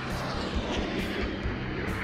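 Steady jet noise of the single-engine F-35A Joint Strike Fighter prototype in flight, an even rushing sound.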